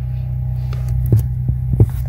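A steady low hum with a few faint clicks, the clicks from a wire paper clip being bent and handled at the connector.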